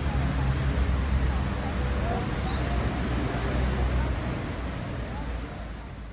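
Steady city street traffic rumble with a low engine drone from passing and idling vehicles, fading down near the end.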